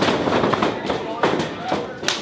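A few sharp slaps and thuds of pro wrestlers' strikes and bodies landing on the ring canvas, over the shouting of the crowd.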